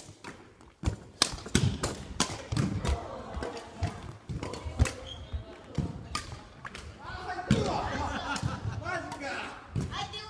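Badminton rally: sharp strikes of rackets on the shuttlecock and footfalls on the wooden gym floor, coming irregularly, the loudest about a second in. Voices of other players in the hall come in during the second half.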